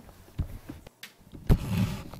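Handling noise as a hand touches the laptop and camera: a light knock, then a louder thump about one and a half seconds in, followed by a brief rustle.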